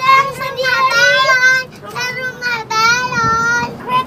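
A child singing in a high voice, with long held notes that waver slightly in pitch and a short break just before the middle.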